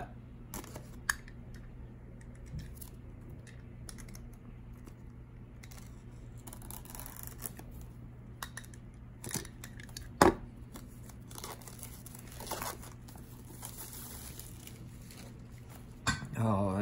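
Plastic shrink-wrap being torn and crinkled off a boxed disc set, with a few sharp clicks, the loudest about ten seconds in, over a steady low hum.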